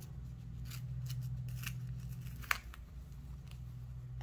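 A rolled cotton fat quarter being unrolled and handled by hand: soft fabric rustling with a few light scratches and one sharp click about two and a half seconds in, over a steady low hum.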